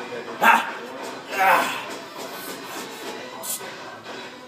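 Two short, loud shouts about a second apart, near the start, each a sharp bark-like yell, over low steady background sound.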